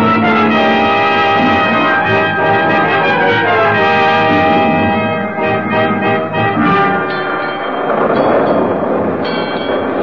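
Orchestral music bridge with brass: loud sustained chords with a falling phrase partway through, growing busier near the end. It marks a scene change into the storm in an old-time radio drama.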